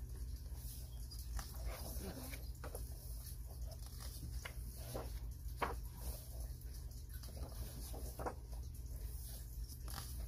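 Thick paper pages of a paperback coloring book being turned and smoothed flat by hand: scattered soft rustles and taps over a steady low hum.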